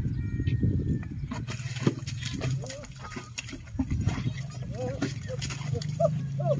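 Short shouts and calls from people driving a carabao (water buffalo) as it strains to drag a loaded sled through deep paddy mud, over scattered wet knocks and sloshing from the sled and the animal in the mud.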